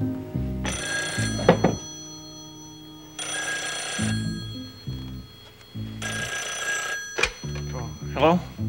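Telephone bell ringing three times, each ring under a second long and about two and a half seconds apart, over low pulsing background music. A knock near the end as the handset is picked up.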